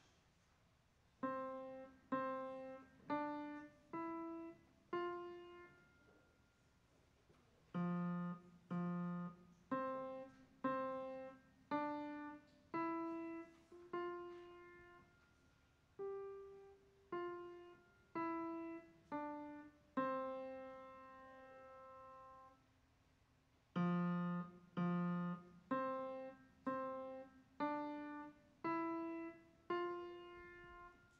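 Upright piano played slowly by a young beginner, one single note at a time, each struck note left to ring and fade. It is a simple melody in three short phrases with brief pauses between them, and one longer held note before the last phrase.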